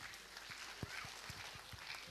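Faint auditorium room noise with scattered soft taps and clicks.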